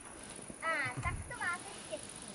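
A person's high, wavering voice sounds twice in short calls, a little over half a second apart, with soft low thumps around them.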